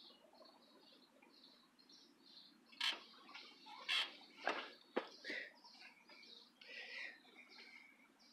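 Birds chirping faintly in the background, short high calls repeating over and over. A handful of louder, sharp clicks or chips fall between about three and five seconds in.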